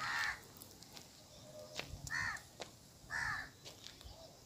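A crow cawing three times: once at the start, again about two seconds in, and once more just after three seconds, each caw short and arching in pitch.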